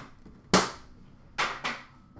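Foil trading-card pack wrappers being torn and crinkled open by hand: a sharp rip about half a second in, then two shorter crinkles near the end.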